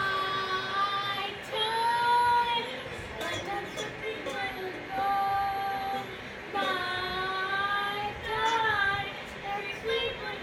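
A young girl singing a song in long held notes, several sung phrases of one to two seconds each, the pitch wavering and bending slightly at the ends.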